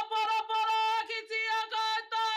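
A woman's unaccompanied chant, sung almost entirely on one high held note and broken into short syllables.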